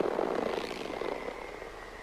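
Low, rumbling sci-fi sound-effect drone from a film soundtrack, slowly fading, with a faint steady high tone near the end.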